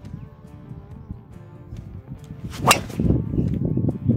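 A driver striking a golf ball: one sharp crack of the clubhead hitting the ball a little under three seconds in, followed by a low rushing noise.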